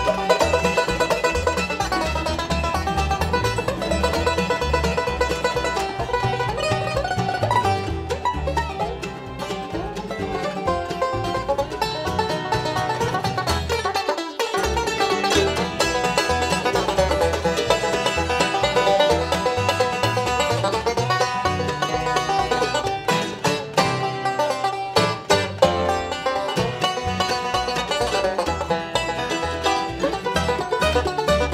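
Live bluegrass band playing an instrumental with no singing: a five-string resonator banjo picking prominently over mandolin, fiddle, guitar and upright bass. The bass drops out briefly about halfway through.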